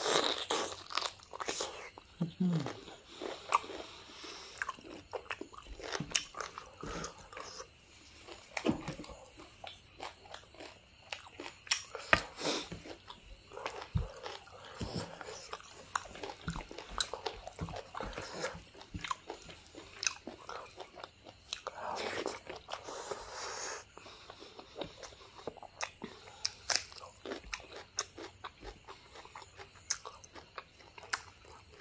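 Close-up mouth sounds of a person eating boiled beef off the bone and rice: biting, chewing and wet smacking with many sharp clicks and crunches throughout.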